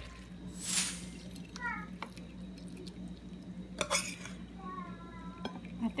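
A wooden spatula stirring and scooping cooked string beans in a metal pan, with a swish and a few sharp clicks of utensil on pan, over a steady low hum.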